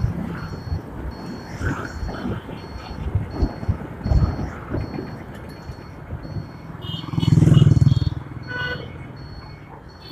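Riding a motorcycle in city traffic: wind buffeting the microphone over engine and traffic noise, with a faint high beep repeating about twice a second. About seven seconds in, a louder engine rumble swells for about a second.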